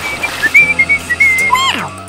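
A comic whistle sound effect: one high whistle held with a slight waver, then sliding steeply down in pitch near the end, over background music.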